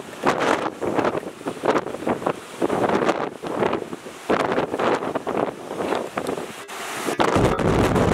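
Typhoon-strength wind buffeting the microphone in irregular gusts, over rough, churning harbour water. About seven seconds in the buffeting turns heavier and deeper.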